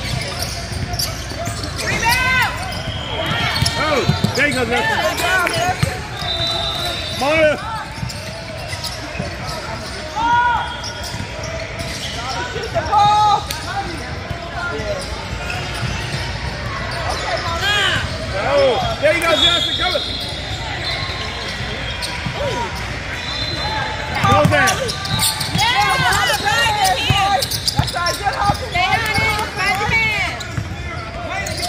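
Basketball game in a large gym: sneakers squeaking on the hardwood court and the ball bouncing, over a steady background of spectators and players talking and calling out.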